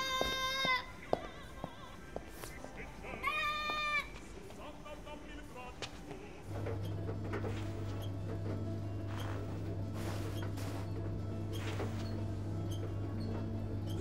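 A small child crying: a long, high wail at the start and a second one about three seconds in. About six and a half seconds in, a steady low hum begins and holds.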